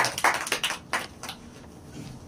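A small group applauding, the claps thinning out and stopping about a second and a half in.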